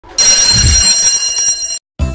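Electric bell ringing loudly and steadily for about a second and a half, then cutting off suddenly, with a low thump beneath it about half a second in.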